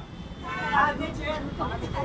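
Voices of several people talking and calling out among a small group, with short phrases about half a second in and near the end, over a steady low rumble.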